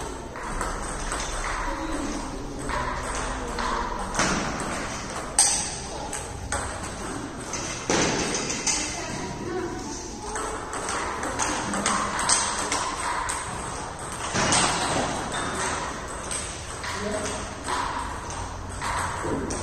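Table tennis ball clicking off paddles and the table at irregular intervals, with voices talking in the background of a large hall.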